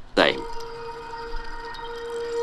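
Soundtrack of a documentary playing through a computer: a short falling swoosh about a quarter second in, then a single steady held note from the background music.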